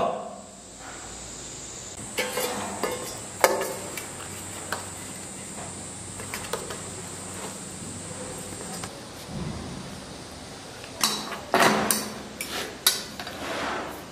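Spoon scooping rice and pork bones out of an aluminium pot into a stainless-steel bowl: scattered clinks, scrapes and knocks of utensil on metal, with a busier clatter near the end as the pot and bowls are set down at the table.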